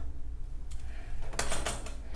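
Small metal yarn cutter clicking and clinking as it is handled while trimming yarn ends: one sharp click under a second in, then a quick cluster of clicks around a second and a half in.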